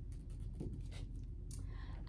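Faint rustling and scraping of a hardcover library picture book in a plastic jacket being set down on a shelf display, over a low steady hum.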